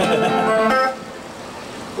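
An amplified electric guitar chord rings out and is cut off abruptly just under a second in, leaving a much quieter lull.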